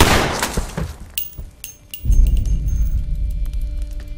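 A sudden loud crash with a glassy, breaking quality that dies away over about a second, followed by a few sharp clicks. About halfway through a deep low rumble with a few held tones sets in and holds, a swell of dark music.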